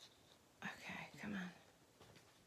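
A woman whispering softly under her breath for under a second, starting about half a second in.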